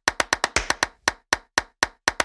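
A rhythmic run of short, sharp percussive hits, a transition sound effect on an animated title card. The hits come quickly, about eight a second, then slow to about four a second in the second half.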